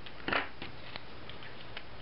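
Small craft scissors and a pleated paper strip being handled: a short rustle about a third of a second in, then a few faint light clicks as the scissors are put down and the folded paper is picked up.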